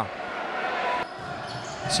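Echoing sports-hall sound during futsal play: a steady haze of crowd noise with the ball and players on the wooden court.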